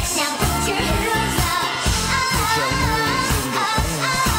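Upbeat Japanese pop song with singing over a steady dance beat.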